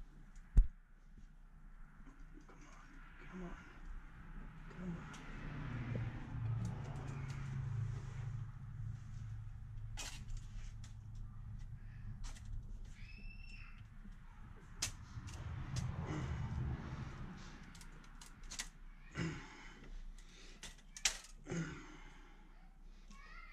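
Head gasket being handled and pressed down onto an inline-six engine block deck: scattered clicks and taps of the gasket against the block, with one sharp click about half a second in. A low hum runs through the middle stretch.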